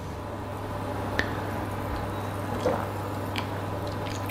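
A steady low hum with a few faint clicks and small handling noises as a glass of sparkling white grape juice is held and lifted.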